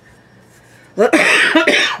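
A woman coughing, a loud run of coughs that starts about a second in and lasts about a second, after a quiet first second.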